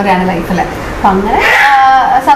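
Speech only: a woman talking, her voice going high about a second and a half in.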